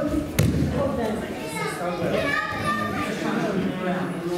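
A single heavy thud of a body landing on the judo mats about half a second in, amid voices of people talking in a large hall.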